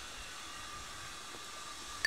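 Faint, steady hiss of outdoor background noise, with no distinct event.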